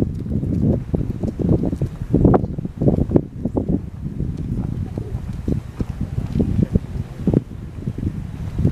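Outdoor ambience: a steady low rumble with many irregular short knocks through it.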